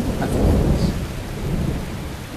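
A low rumble, loudest about half a second in, over a steady rushing noise.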